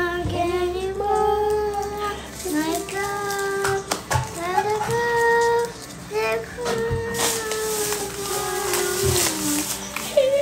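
Children singing a song, holding long notes, with a few soft knocks in between.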